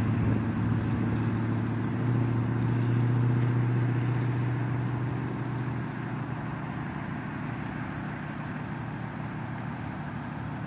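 Parked ambulance's engine idling with a steady low hum, which grows weaker a little past the middle.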